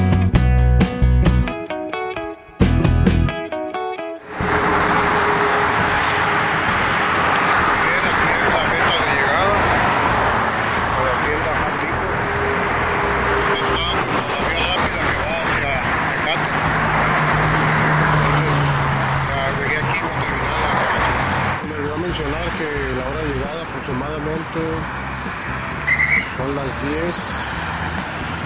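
A few seconds of music, then steady outdoor street noise with car traffic and people's voices in it. The noise gets somewhat quieter after about twenty seconds.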